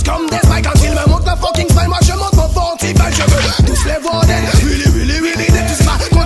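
French dancehall track: a voice rapping over a heavy bass-driven beat.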